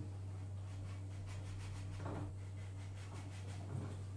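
Quiet room with a steady low hum. Faint soft taps and scrapes around the middle come from a metal pastry ring being pressed through thin rolled dough onto a wooden board.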